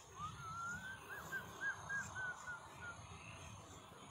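A high, whistle-like call: one rising note, then a run of short arched notes at about three a second, fading out near the end.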